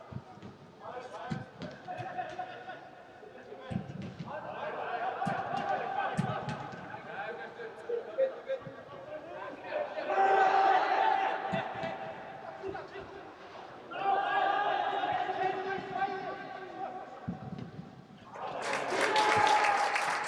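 Players' shouts echoing around a large indoor football hall, with occasional dull thuds of the ball being kicked. A louder burst of noise comes near the end.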